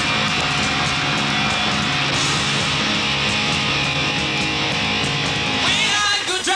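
Live punk rock band playing a loud instrumental passage: distorted electric guitars strumming over bass and drums, with no vocals.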